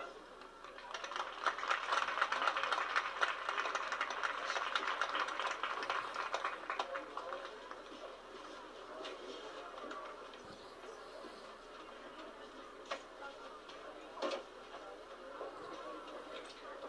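Stadium crowd clapping and cheering just after a marching band's piece ends. The applause swells about a second in and dies away by about halfway, leaving faint crowd chatter and a few scattered claps.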